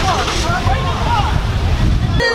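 Low, uneven rumble of wind and traffic on a handheld microphone carried along a city street, with indistinct voices of people nearby.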